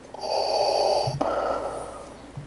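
A man breathing heavily and close to the microphone: one long, loud breath lasting about a second, ending in a brief low voiced sound, then a quieter stretch.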